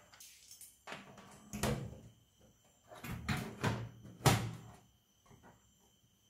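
Side panel of a PC tower case being fitted onto the chassis and shut: a handful of knocks and scrapes, the loudest knock about four seconds in.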